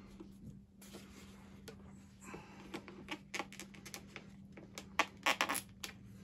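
Stiff plastic parts of a Godzilla figure rubbing, scraping and clicking as the tail piece is forced against a tight body socket that will not take it. The clicks and scrapes come thicker from about halfway, loudest about five seconds in.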